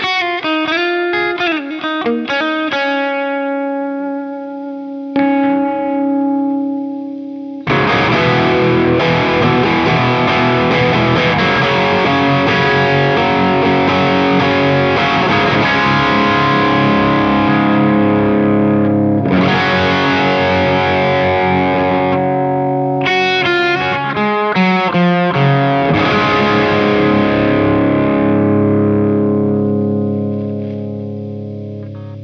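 Les Paul electric guitar, tuned a half step down, played through a distorted amp tone. It opens with picked single notes and a held note, then about eight seconds in a loud distorted chord is struck and left to ring. Further chords are struck later, with a quick run of picked notes in between near the end.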